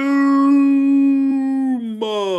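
A man's long, drawn-out celebratory yell, held on one pitch for about two and a half seconds before dropping off at the end.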